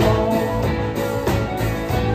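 Live rock band playing an instrumental stretch: electric guitars and electric bass over a drum kit beat, with no singing.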